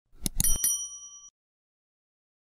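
Subscribe-button animation sound effect: three quick clicks, then a short bright bell ding that rings out and stops about a second in.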